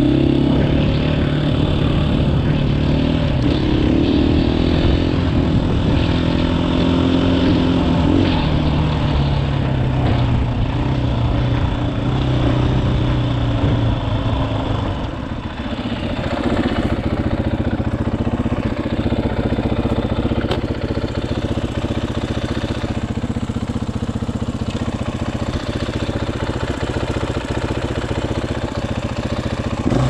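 2018 KTM 500 EXC-F's single-cylinder four-stroke engine running under load, its pitch rising and falling with the throttle. About halfway through it eases off briefly, then runs lower and rougher.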